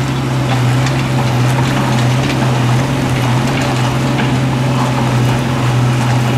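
Bobcat E32 mini excavator's diesel engine running with a steady drone while the machine works and turns on its tracks.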